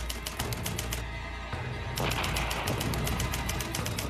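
Background music with a steady low drone, overlaid by runs of rapid sharp clicks as a sound effect, about eight a second, in the first second and again from about two seconds in.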